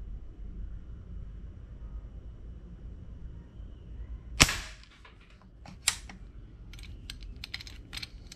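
A custom PCP air rifle in 5.5 mm firing once: a single sharp crack about four and a half seconds in, with a short ring after it. Its air cylinder is nearly down to the low end of its pressure. A few lighter clicks follow over the next few seconds.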